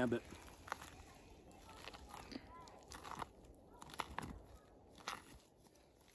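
Faint, scattered crunches and crackles of a folding karambit knife slicing through a deer's front shoulder during field dressing.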